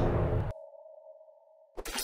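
The end of a cartoon intro jingle fading out over about half a second, leaving a faint steady tone until a voice starts near the end.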